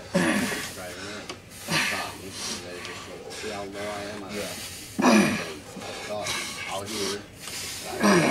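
Men shouting and grunting with strain during an arm-wrestling pull, in no clear words. Loud falling shouts come at the start, near two seconds in and about five seconds in, with drawn-out strained voicing between them.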